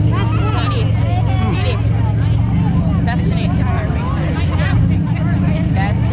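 Demolition derby car engines idling, a steady low rumble, while several people chat nearby.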